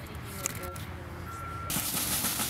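Street traffic rumble with two short beeps in the middle, then a sudden loud hiss that starts near the end.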